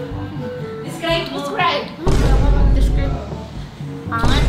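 Background music, with a short voice about a second in, then a heavy low boom sound effect about two seconds in that rings on for about a second.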